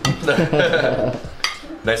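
Metal fork and spoon clinking against a plate while serving up a piece of curried beef, with a sharp clink at the start and another about one and a half seconds in.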